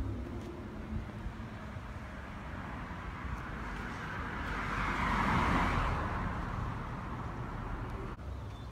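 Street traffic noise, with a vehicle passing that swells and fades in the middle.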